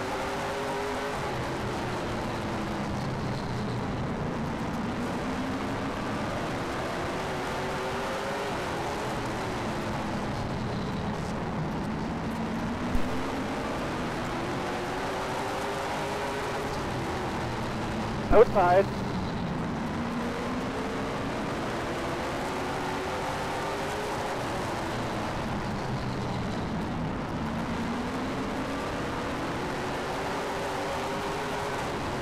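Late model stock car's V8 engine at racing speed, heard from the on-board camera inside the car: its pitch climbs down each straightaway and falls off into each turn, lap after lap, about every seven seconds. A brief loud burst of noise cuts in about eighteen seconds in.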